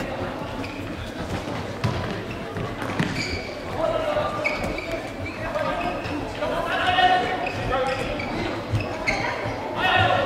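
An indoor football being kicked and bouncing on a sports-hall floor, a few sharp thuds that echo in the large hall.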